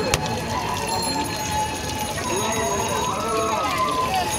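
Busy street ambience with background voices talking and a steady hum of outdoor noise. There is one sharp knock just after the start.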